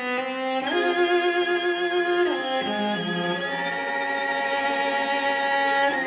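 Background music on bowed strings, with held notes that waver slightly and a falling slide about two seconds in.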